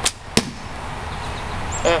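A hickory bow being shot: a sharp snap as the string is released, then a second sharp strike about a third of a second later as the arrow hits the cardboard target.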